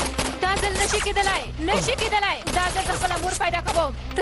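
Rapid gunfire going on throughout, with high anguished cries from a woman over it and a low steady drone underneath.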